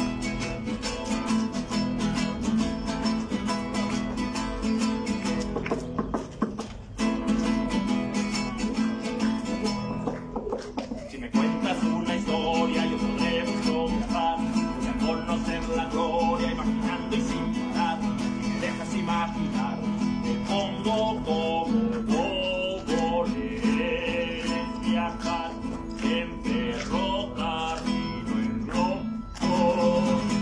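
Acoustic guitar strummed fast in a steady rhythm, with two brief breaks about six and ten seconds in.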